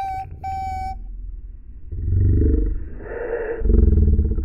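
Two short electronic beeps in the first second, the second longer, then two deep, distorted rumbling swells with a low pitched tone, the louder one near the end.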